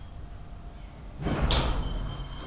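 Elevator car's automatic centre-opening sliding doors starting to open as the car stands at the landing: a low hum, then about a second and a half in a loud rush with a sharp clack as the door mechanism engages and the doors begin to slide apart.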